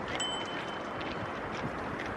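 Steady outdoor background noise with some wind on the microphone. Shortly after the start, a thin, high ringing tone sounds for about a second.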